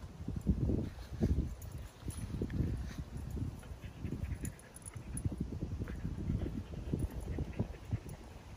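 A dog panting and moving about on grass: soft, irregular low puffs and thumps, several a second.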